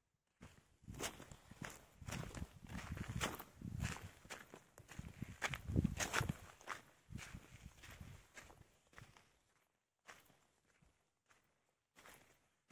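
Footsteps on loose volcanic gravel and stones, an irregular run of crunching steps that thins out and stops about ten seconds in.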